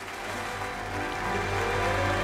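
Symphony orchestra playing, growing steadily louder with a dense, full sound.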